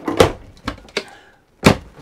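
Caravan kitchen drawers being opened and pushed shut. There is a sharp knock about a quarter second in, two lighter knocks after it, and the loudest knock near the end as a drawer shuts.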